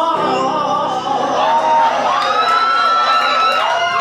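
A male singer belting long held notes with vibrato in musical-theatre style, the line climbing higher, over instrumental accompaniment.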